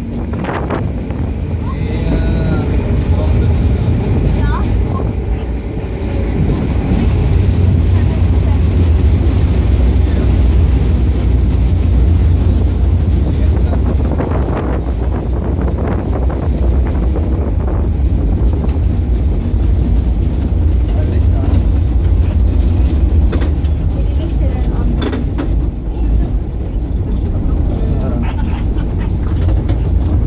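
A 1926 tram motor car running along its rails, heard from its open front platform: a steady, loud low rumble that grows louder several seconds in as it runs into a concrete tunnel.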